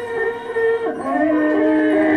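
Free-improvised jazz with a bowed double bass holding long, sliding tones that waver and glide between pitches, over sparse drums.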